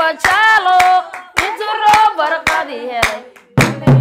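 Women singing Somali buraambur in a solo melodic line, with hand claps keeping a beat of about two a second. Near the end a deeper, low beat joins the claps.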